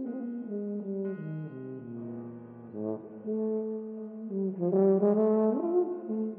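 Yamaha YFB821S bass tuba playing a slow phrase that steps down into its low register and then slides back up, loudest near the end, over a steady held low tone.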